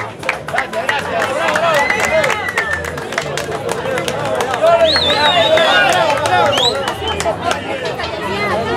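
A crowd of many voices shouting and cheering at once, with scattered sharp clicks. Louder, high-pitched shouts come about five seconds in.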